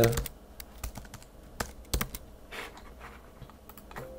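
Typing on a computer keyboard: scattered key clicks at an uneven pace, with a few sharper clicks around the middle.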